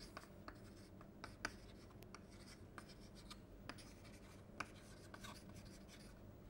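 Chalk writing on a blackboard: faint, irregular taps and short scratches of the chalk, roughly two a second, over a faint steady hum.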